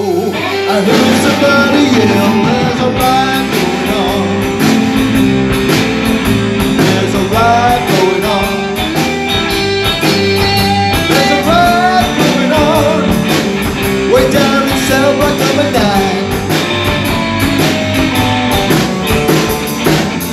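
Rock and roll band playing an instrumental break: electric guitar with bending notes over a walking bass line and drums.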